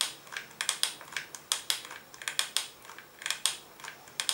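Hot glue gun worked over a figure covered in dry pasta: a string of irregular light clicks and taps, a few a second, often in little clusters.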